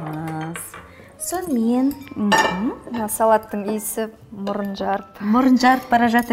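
Metal forks clinking and scraping against a glass bowl as a salad is tossed.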